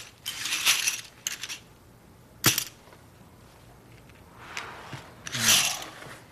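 Poker chips clattering on a card table: a few short clatters in the first second and a half, then a single sharp click about two and a half seconds in. A short breathy rush comes near the end.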